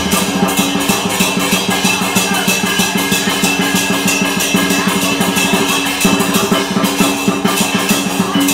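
Chinese dragon dance percussion: a big drum beaten in a fast, even rhythm, with cymbals and gong ringing on through it.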